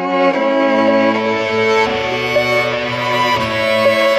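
Multitracked bowed violin quartet playing slow, sustained chords whose notes change every second or two.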